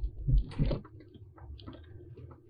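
A Jeep's engine drones low and steady at crawling speed, heard inside the cab. Soft knocks and rattles come in the first second as the vehicle bumps over the rough trail.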